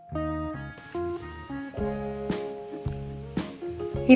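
Background music led by an acoustic guitar playing a run of held, changing notes.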